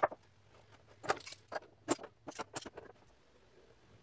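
A series of short knocks and clicks from the parts of a small wooden box and metal bar clamps being handled on a workbench during a glue-up. The sharpest knock comes right at the start, with a cluster about a second in and a few more before three seconds.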